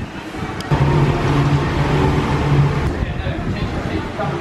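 A motor vehicle's engine running close by, a steady low hum that comes in about a second in and fades before the end.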